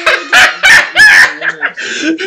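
A man's loud, high-pitched cackling laughter in three hard bursts.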